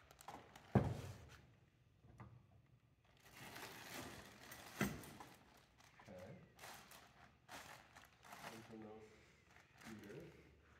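Handling noise from unboxing: a stretch of rustling, ending in a single sharp knock about five seconds in, then lighter handling sounds.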